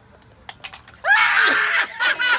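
A person's loud, high-pitched shriek starting about a second in and lasting most of a second, after a few faint clicks.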